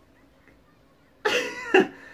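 A man's short, cough-like burst of laughter about a second in, after a moment of near quiet, with a sharp second catch near its end.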